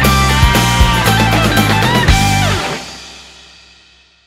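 Melodic rock song ending: guitar over drums and bass, then the band stops about two and a half seconds in with a falling pitch slide, and the final chord rings out and fades away.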